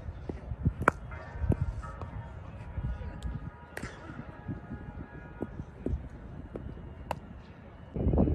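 Three sharp knocks, about three seconds apart, from a cricket bat hitting a ball in a fielding drill, over faint music.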